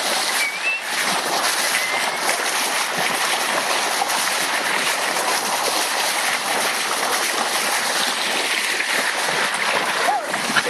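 Steady rush and splash of sea water along a sailing yacht's bow as it moves through the water.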